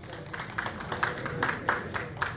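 Scattered applause from a small crowd after a speech: individual hand claps heard separately, a few per second.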